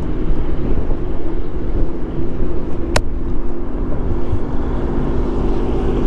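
Motorcycle engine running steadily under wind noise on the microphone, with a single sharp click about three seconds in.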